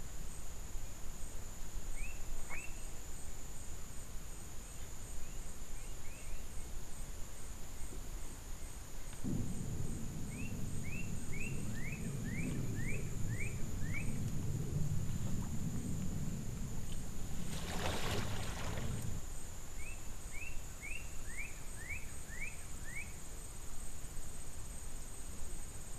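Swamp field ambience: a bird sings runs of short, quick falling whistled notes, over a steady high-pitched whine. Through the middle a low rumbling noise rises, ending in a brief rushing burst before it stops.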